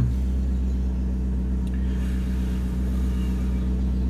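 Maserati Quattroporte's 4.2 V8 idling steadily, heard from inside the cabin as a low, even hum. The owner says the engine is still not running right, which is why its emissions are out.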